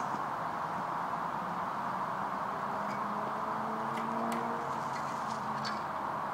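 Steady rushing outdoor background noise, with a few light clicks in the second half as a dirt-jump bicycle rolls up close to the ground-level microphone near the end.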